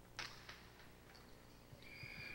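Two faint, sharp knocks about a third of a second apart: a hard jai alai pelota striking the fronton walls and floor on a serve, which is ruled an overserve.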